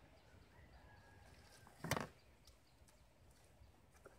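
Quiet outdoor background with one short, sharp rustle-crackle about halfway through as plastic grafting tape is handled, followed by a few faint ticks.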